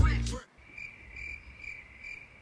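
Background music ends on a fading bass note in the first half-second. After it comes faint, thin, high-pitched chirping, pulsing about twice a second.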